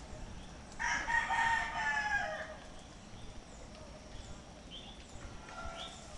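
A rooster crowing once, a call of nearly two seconds starting about a second in that drops in pitch at the end. A shorter, fainter call follows near the end, over short high chirps repeating about once a second.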